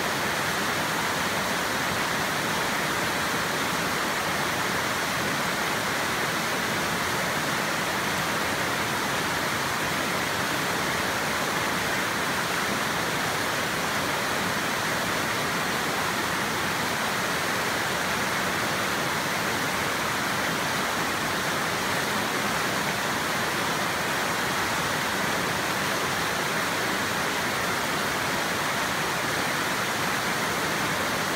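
Fast stream water pouring over a rock ledge into whitewater rapids: a steady, unbroken rush of water.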